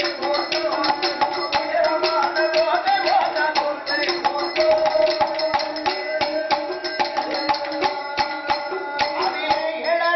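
Villu paattu folk music: the large bow's string struck with sticks in a quick, steady beat, its hanging bells jingling, and a clay pot (kudam) beaten, over a sustained melody line.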